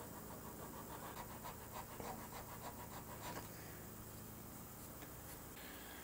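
Faint, rhythmic strokes of a small hand file rasping across wood at the head of a guitar neck, cutting the shelf for the nut, about four strokes a second from about a second in until past three seconds.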